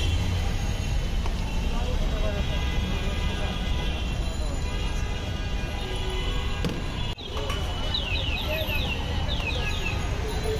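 Busy street background: a steady low traffic rumble and indistinct voices. About seven seconds in the sound briefly cuts out, and then a run of short, high, falling chirps repeats several times.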